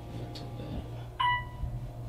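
A single bright electronic chime from an OTIS Series One hydraulic elevator sounds about a second in and dies away quickly, over a steady low hum.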